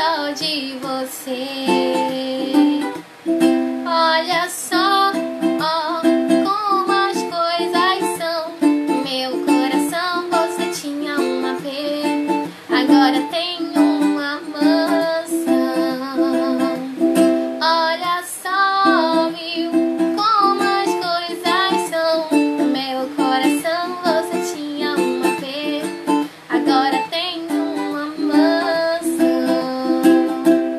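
A woman singing a song while strumming a steady chord accompaniment on a ukulele.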